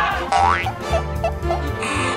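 Background music with a comic sound effect: a quick rising whistle-like glide about a third of a second in, followed by a few short blips.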